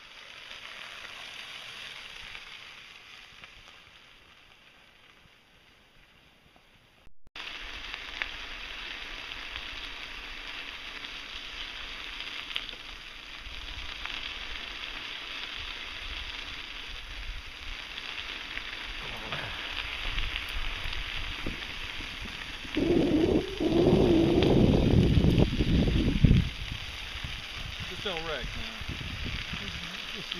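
Bicycles rolling along a gravel rail trail: a steady hiss of tyres on grit and wind on the microphone of a moving camera. The sound dips and drops out briefly about a quarter of the way in, and a louder buffeting stretch comes about three-quarters of the way through.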